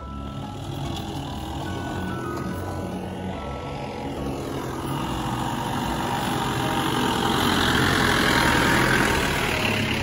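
Off-road jeep engine running as the jeep drives up a rutted dirt track, growing louder as it approaches and loudest about eight seconds in, with background music underneath.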